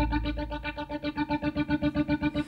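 Electric guitar through effects playing a fast, even pulse of repeated notes in a quiet instrumental break of a rock song, with a low held note fading out at the start.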